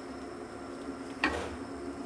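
Long wooden spoon stirring thick, softened rice pudding in a steel pot. The stirring is faint, with one short scrape about a second in, over a steady low hum.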